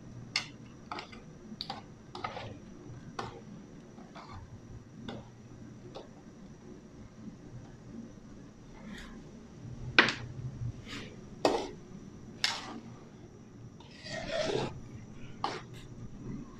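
Scattered light clinks, taps and scrapes of metal utensils against an aluminium wok as vegetables are dropped in from a metal tray. The sharpest knock comes about ten seconds in, and a longer scraping stir follows near the end.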